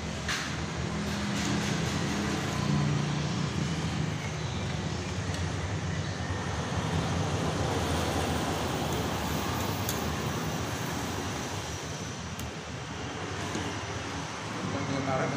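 Steady vehicle noise, a continuous rumble with a low, wavering hum, with a few faint light clicks.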